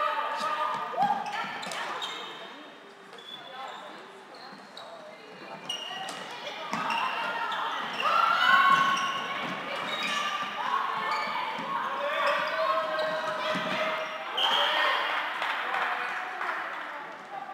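Floorball players' indistinct calls and shouts in a large sports hall, mixed with scattered clacks of sticks and the plastic ball and footfalls on the court floor.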